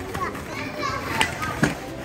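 Children playing: young voices chattering and calling, with two sharp knocks a little past the middle.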